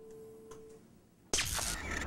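Closing-credits music ends on a single held note that fades out before a second in. About a second and a half in, a loud production-logo sound effect starts suddenly.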